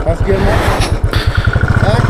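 Single-cylinder Royal Enfield motorcycle engine idling with an even, steady thump, about five or six beats a second.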